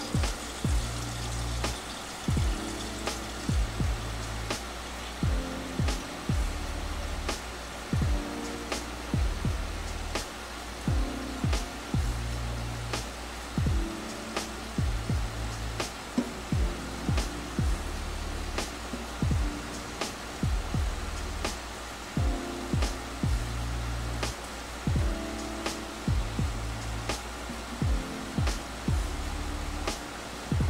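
Background music with a steady beat and deep bass notes.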